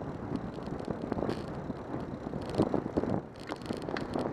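Wind on the microphone of a bicycle-mounted camera while riding, with tyre and road noise and scattered short rattles and clicks from the bike.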